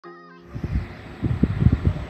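A brief steady pitched tone at the very start, then irregular low rumbling thumps from wind buffeting an outdoor phone microphone.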